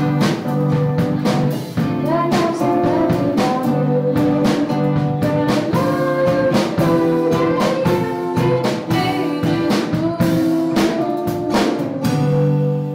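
Live acoustic band playing a song: a woman's voice singing over two strummed acoustic guitars, with a drum kit keeping a steady beat.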